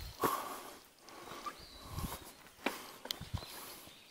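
Footsteps on a rocky forest trail strewn with dry leaves: irregular scuffs and crunches, a few sharper clicks near the end.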